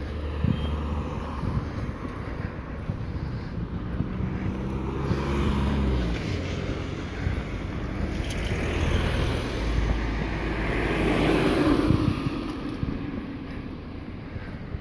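Cars passing on a street: low engine hum and tyre noise swelling and fading, loudest as one passes close near the end.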